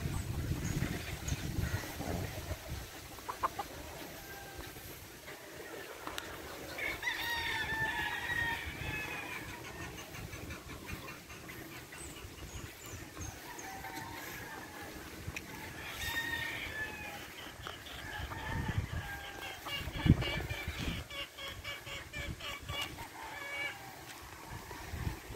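Gamecocks crowing, one crow about seven seconds in and another around sixteen seconds, with clucking and a rapid repeated call in the last few seconds.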